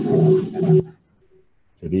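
A man's drawn-out, steady-pitched hesitation sound, a held 'eee' heard through a video call, which breaks off a little under a second in. After a short near-silent pause he starts speaking again near the end.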